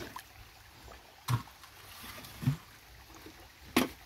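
Faint trickle of a shallow stream, broken by two sharp knocks and a duller thump as a clay pot and a basin of utensils are set down on the stream bed.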